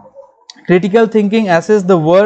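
A man's lecturing voice picks up again after a brief pause, with a single faint click just before he starts talking.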